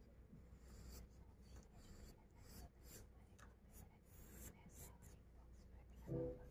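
Faint scratching of a graphite pencil on a paper drawing sheet: short, irregular strokes as a fruit outline is drawn, over a low steady hum.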